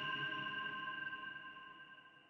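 The ringing tail of an electronic logo sting: a few steady high tones held together, slowly fading out until they die away at the end.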